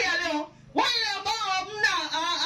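A young woman singing into a microphone, her voice amplified, with a brief break between two phrases about half a second in.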